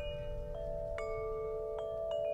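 Hanging metal tube wind chime ringing: a few notes are struck about half a second apart, and each rings on and overlaps the others.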